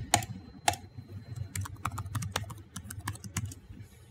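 Typing on a computer keyboard: an irregular run of key clicks as login credentials are entered, with two louder keystrokes in the first second.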